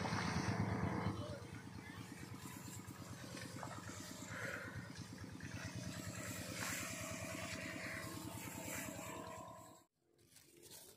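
Motorized backpack crop sprayer running steadily while spraying, a rapid, even pulsing drone that stops abruptly near the end.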